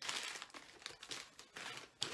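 Packaging crinkling and rustling as cosmetics are handled, loudest in the first half second, with a few short crackles after.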